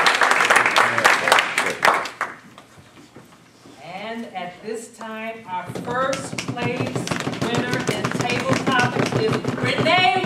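Audience applause that stops about two seconds in; after a short lull a voice speaks briefly, then the applause starts up again about halfway through, with voices over it.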